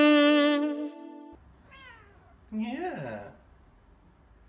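A held chord of background music cuts off about a second in. A domestic tabby cat then meows: a faint short call, then one louder meow that rises and falls in pitch.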